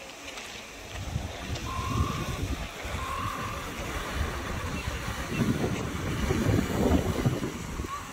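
Wind buffeting the microphone in uneven gusts, strongest in the second half. Two short, steady high tones sound about two and three seconds in.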